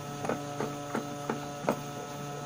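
Stepper motors of a 3D-printed faceting machine humming steadily as the head moves back and forth under an automatic faceting program, with soft ticks about three times a second.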